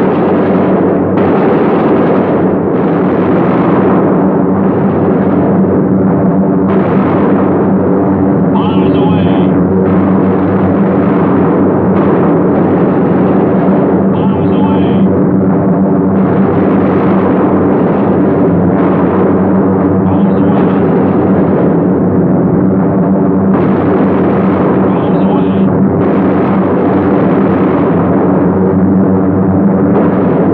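Steady, loud drone of B-17 Flying Fortresses' radial engines on a 1940s film soundtrack, holding an even pitch throughout.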